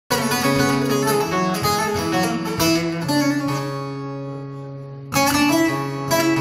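Solo bağlama (long-necked Turkish saz) playing the instrumental introduction to a Turkish folk song: quick plucked notes over a steady low drone string, then a note left to ring and fade for about two seconds before the picking comes back loud just after five seconds.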